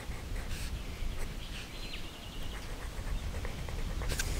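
Coloured pencil scratching on paper, with a bird giving a short high call and quick trill about halfway through, over a low rumble.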